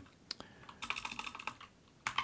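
Computer keyboard keys being tapped in a quick, faint run of separate clicks, backspacing over a mistyped word. The clicks stop shortly before the end.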